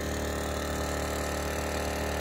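Engine-driven water pump running steadily at a constant speed, filling a water tank.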